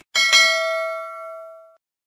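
Notification-bell sound effect from a subscribe-button animation: a bell ding struck twice in quick succession, then ringing and fading for about a second and a half before it cuts off.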